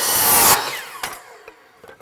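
DeWalt compound miter saw cutting through a wooden board, loudest about half a second in. Then the blade winds down with a falling whine and fades out about a second and a half in.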